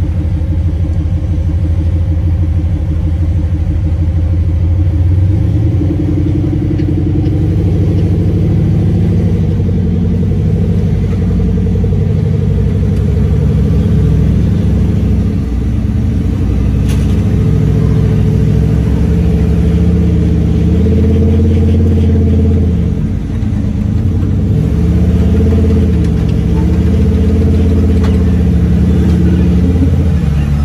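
Jeep-bodied rock-crawler buggy's engine running under constantly changing throttle as it crawls up a steep sandstone ledge, its pitch rising and falling with each blip of the throttle.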